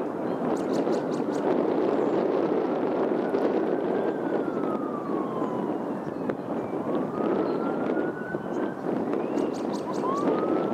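A siren wailing in slow rises and falls in pitch over a steady roar of traffic.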